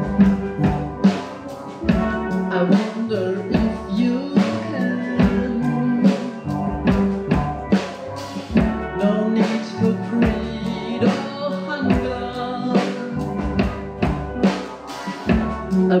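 Steel pan orchestra playing a piece: many tuned steel pans struck with rubber-tipped mallets, ringing notes over a steady beat.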